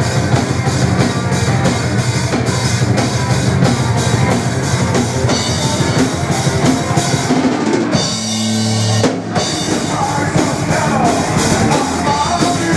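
Power metal band playing live: fast, dense drumming under distorted electric guitar and bass. About eight seconds in the drums stop for a held chord lasting about a second, then the full band comes back in.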